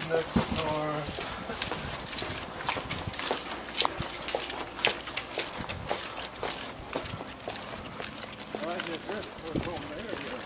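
Footsteps of two people walking on a concrete sidewalk: a string of short, sharp shoe clicks at about two a second, with brief bits of voices near the start and again near the end.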